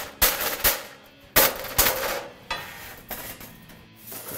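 Body hammer striking thin sheet steel held against a dolly on the back side: about six sharp metallic strikes, unevenly spaced, softer in the last two seconds. This is hammer-and-dolly work on a TIG-welded seam, flattening the weld and working out warpage.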